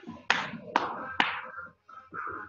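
Three sharp knocks about half a second apart.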